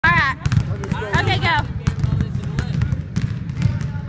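Basketballs bouncing on a hardwood gym floor: repeated, irregular sharp thuds echoing in a large gym, with voices calling out twice in the first second and a half.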